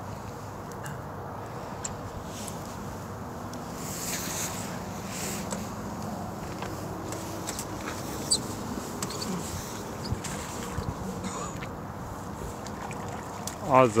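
Steady outdoor wind rumble on the microphone, with faint voices in the distance and a couple of light clicks.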